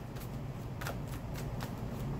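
A tarot deck being shuffled by hand: a continuous soft rustle of cards sliding against each other, with a couple of sharper card snaps.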